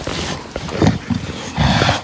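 English bulldog sniffing with rough, snuffling breaths, loudest just before a second in and again near the end.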